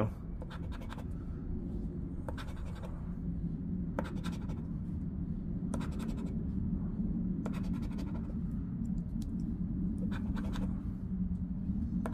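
A casino-style chip scraping the coating off a scratch-off lottery ticket: a continuous rasping scrape, with short louder strokes every second or two.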